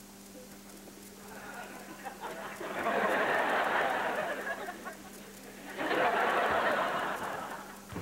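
Studio audience laughing and clapping in two swells, the first building about two and a half seconds in and the second rising near six seconds, with a quieter lull between them.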